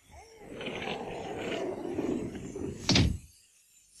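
A door shutting with a single thud about three seconds in, after a couple of seconds of muffled rustling.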